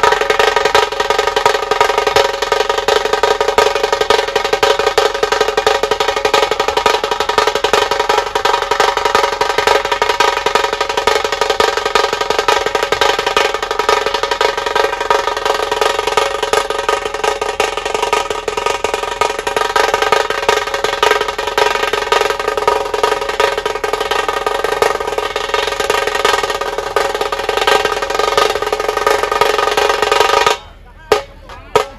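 A ceremonial drum band playing a fast, continuous run of drum strokes on large bass drums and side drums, with a steady ringing, bell-like metallic tone sustained over it.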